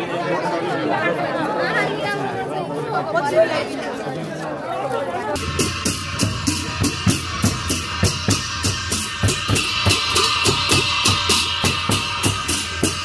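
Crowd chatter, then about five seconds in an abrupt switch to a Newar procession drum band: large two-headed laced barrel drums beating a steady, even rhythm with brass cymbals clashing in time.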